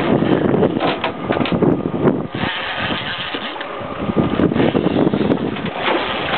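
Boat engine running steadily at sea, with wind on the microphone and a few knocks on deck.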